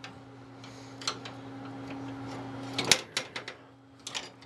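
A steel rod clinking and tapping against a steel lawn-tractor frame as it is held in place. There is one sharp click just before three seconds in, followed by a few lighter ticks, over a steady low hum.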